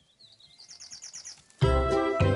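A bird's rapid trill of quick chirps, rising in pitch and growing louder, then loud music with a steady beat cuts in about one and a half seconds in.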